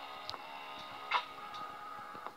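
Background music: held pitched notes with two short sharp clicks, a faint one near the start and a louder one about a second in.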